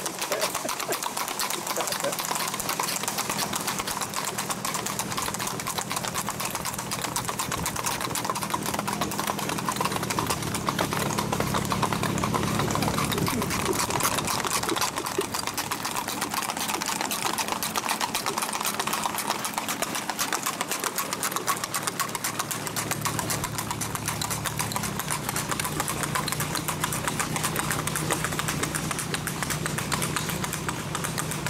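Hooves of gaited horses clip-clopping rapidly on asphalt, a fast run of hoofbeats, over a steady low hum that shifts pitch a few times.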